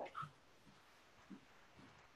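Near silence: faint room tone over a video call, with a few faint, brief sounds.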